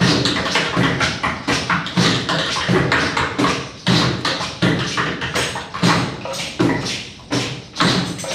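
Live hand-drum percussion playing a steady beat of sharp strikes, between one and two a second.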